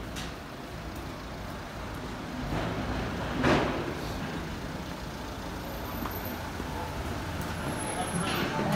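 Street traffic noise: a steady rumble of road vehicles, with one vehicle passing close and swelling to its loudest about three and a half seconds in.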